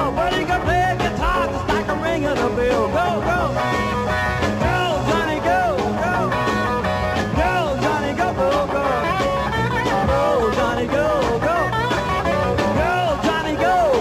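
Jazz-influenced rock trio playing live, with keyboards, bass and drums under a bending lead melody line.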